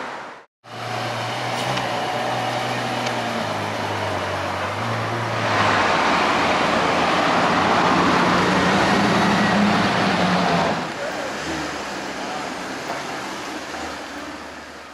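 A car engine running amid street traffic, swelling into a louder stretch of engine noise for about five seconds near the middle before easing back.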